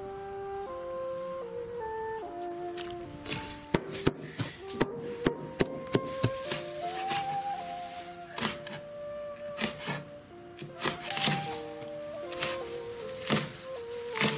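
Kitchen cleaver chopping red chili peppers on a plastic cutting board: a quick, even run of sharp chops starting about four seconds in, then more spaced-out chops, over background music with a stepping melody.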